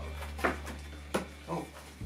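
A border collie sniffing at a treat packet held to its nose: a couple of short, sharp sniffs.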